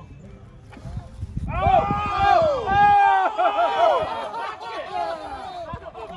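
Several men's voices laughing and calling out over one another, loudest about two to three seconds in, then dying down, in reaction to a mis-hit golf shot.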